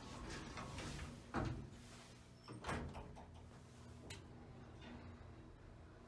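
Elevator car door (single-speed) sliding shut and closing with a knock about a second and a half in, then a second knock about a second later. A faint steady low hum follows.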